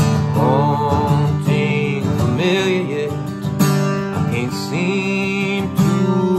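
Acoustic guitar strummed steadily while a man sings a mellow melody over it, his held notes wavering with vibrato.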